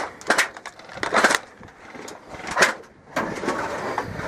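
Sharp clicks and knocks of an airsoft M4 and its magazine being handled after the magazine has run empty: a few separate strikes about a second apart, then rustling from about three seconds in.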